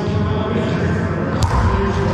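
A wallyball, a soft rubber ball, is struck once by hand about one and a half seconds in, a single sharp smack that echoes in the enclosed racquetball court, over a steady background din.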